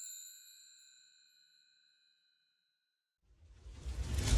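Chime-like ding from a logo sting, several bright tones ringing and fading away over about two seconds. About three seconds in, a whoosh with a deep low rumble swells in.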